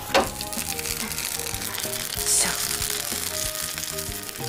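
Buttered sandwich sizzling and crackling as it cooks in a hot sandwich toaster, with background music playing underneath.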